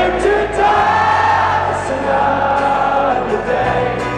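Live folk-rock band playing: acoustic guitar, accordion and drums under long held sung notes from several voices.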